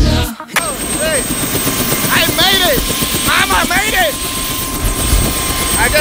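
Helicopter running close by: a dense, steady rotor and engine noise with a thin, steady high whine, starting as music cuts off about half a second in.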